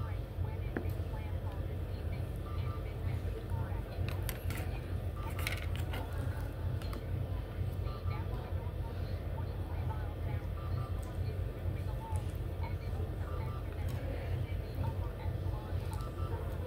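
Eating soup with a plastic spoon: occasional light clicks and knocks of the spoon against the bowl over a steady low hum.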